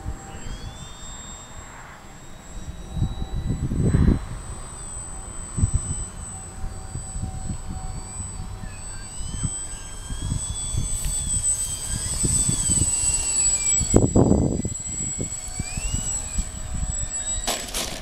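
Parkzone S.E.5a RC model biplane's electric motor and propeller whining as it flies, the pitch rising and falling as it turns and passes, with wind buffeting the microphone in gusts. A couple of sharp knocks come near the end.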